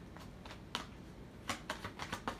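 Tarot deck being shuffled by hand: a run of sharp card clicks and snaps, sparse at first and coming thick and fast in the second half.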